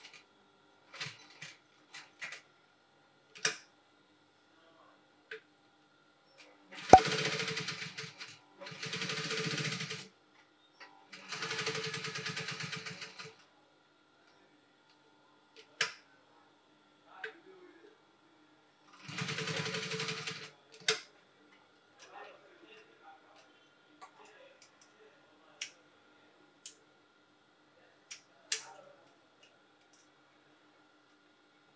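Industrial lockstitch sewing machine stitching fabric in four short runs, the first starting about 7 seconds in with a sharp click. Scattered clicks and knocks come between the runs, and a faint steady motor hum runs underneath.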